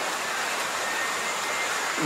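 Steady, even hiss of background noise with a faint, steady high-pitched tone running through it.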